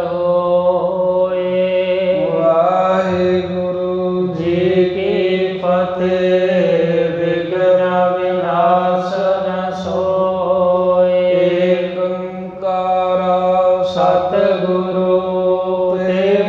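A man's voice chanting a Sikh devotional invocation in long, slowly gliding held notes, over a steady low drone.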